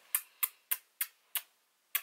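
A series of six short, sharp clicks, the first five about three a second and the last after a longer gap.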